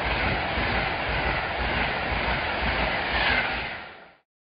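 Train running along the track, a steady running noise that fades out near the end.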